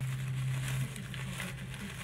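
Clear plastic bag crinkling as crispy fried garlic is poured out of it, the small bits pattering down onto fried chicken in a takeout box. A steady low hum runs underneath and stops near the end.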